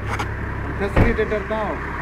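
A vehicle engine idling with a steady low rumble under several men's voices. A sharp thump comes about a second in.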